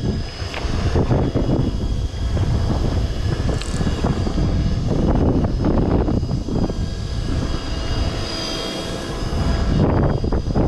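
Gusts of wind on the microphone over a steady motor-like drone with a few thin high whining tones, while a conventional fishing reel is hand-cranked against the weight of a fish on a deep line.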